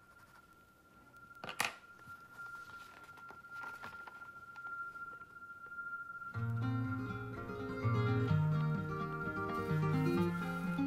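A faint steady high tone with a sharp click about one and a half seconds in, then plucked acoustic guitar music that starts about six seconds in and grows louder.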